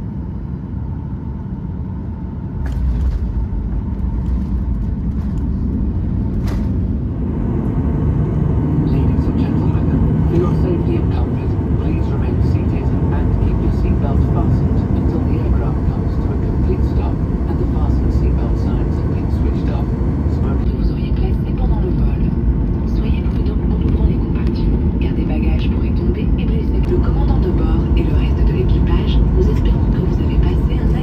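Cabin noise of a Boeing 737-800 on the landing rollout and taxi: a steady low rumble from the engines and airframe that swells about three seconds in and stays loud.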